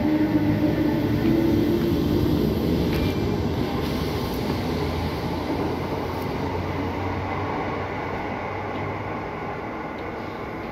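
Class 319 electric multiple unit pulling away past a platform, its running noise with a low steady hum fading gradually as it moves off into the distance.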